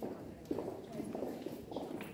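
Footsteps knocking on a hard paved floor at an uneven pace, over a murmur of voices.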